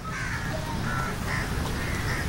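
Birds calling: a run of short, harsh calls, four or five in two seconds, over a steady low rumble.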